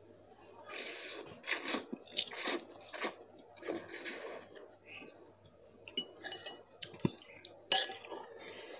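Instant noodles being slurped from a fork and eaten, with a run of short slurps over the first four seconds. Later come scattered light clicks of the metal fork, one sharper click about seven seconds in.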